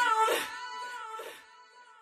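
Music fading out at the end of a track: a few held notes die away and are nearly gone about a second and a half in.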